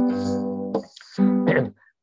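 Acoustic guitar strummed twice, two chords about a second apart, each ringing briefly and dying away, as the intro to a song; heard through a video call.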